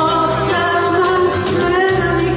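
Live amplified band playing a Greek popular song: singing over acoustic guitar, bouzouki and keyboard.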